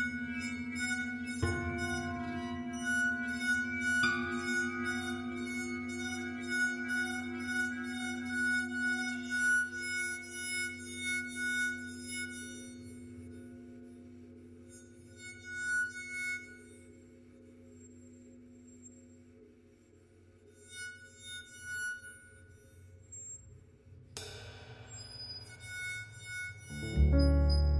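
Instrumental music: a steady low drone under bright, ringing sustained tones that gradually thin out and fade to a quiet stretch, then sparse single tones and a sweeping swish near the end.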